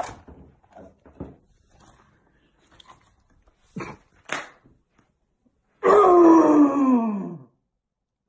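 A man's imitation dinosaur roar: one long cry about six seconds in that falls steadily in pitch, the loudest sound here. Before it there are soft rustles and two sharp knocks.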